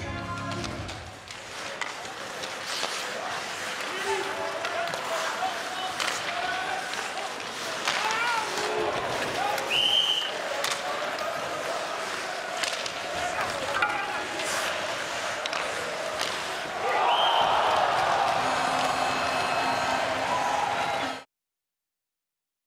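Ice hockey arena game sound: a steady crowd din with sharp clacks of sticks and puck, and short high whistle tones twice. The crowd grows louder about three-quarters of the way through, then the sound cuts off abruptly just before the end.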